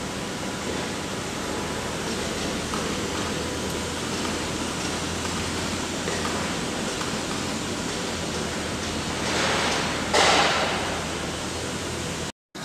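Steady background noise of a factory assembly hall, with a low hum underneath and a brief louder hiss about nine to ten seconds in.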